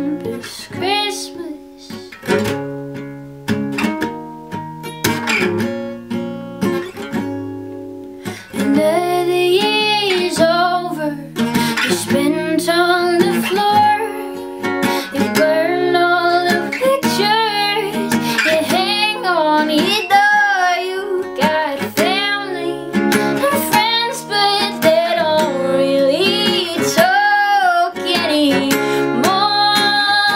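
Acoustic guitar strummed, alone for the first several seconds; then a woman's singing voice comes in over it at about eight seconds and carries on with the guitar.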